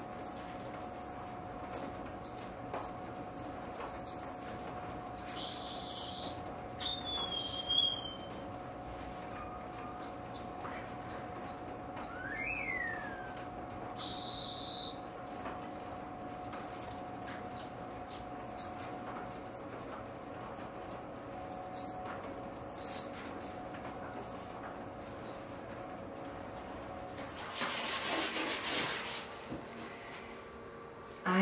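Small estrildid finches chirping in an aviary: short, high chirps scattered throughout, with one sliding call about twelve seconds in, over a steady faint hum. A brief rushing noise comes near the end.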